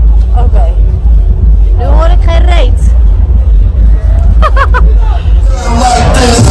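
Loud club dance music. Only its deep bass comes through, muffled, with people's voices over it. Near the end it switches to the full, loud electronic dance music of the club floor.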